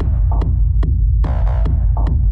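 Electronic dance music from a DJ mix: a heavy, steady bass with a sharp percussion hit about every 0.4 seconds. The bright, fuller mix drops away at the start, leaving a stripped-down bass-and-beat passage with a brief synth chord about halfway through.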